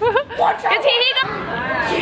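Children's voices shouting and chattering, with a high wavering squeal about a second in.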